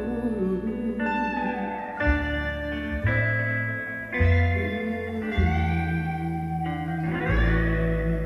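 Recorded music played through large floor-standing Focal Grand Utopia EM Evo loudspeakers in a listening room: an instrumental passage of electric guitar, its notes often sliding in pitch, over bass notes that change every second or so.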